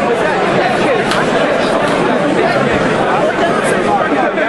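Crowd chatter: many voices talking over one another at a steady level.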